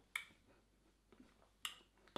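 Near silence broken by two faint, short clicks about a second and a half apart: lip smacks as a beer is tasted.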